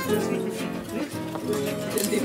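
Several acoustic guitars playing gypsy-jazz swing, with a steady chopped rhythm strumming under a melody line.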